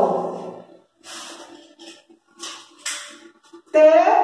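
Paper handling: a few short rustles and crinkles of a paper card being picked up and handled.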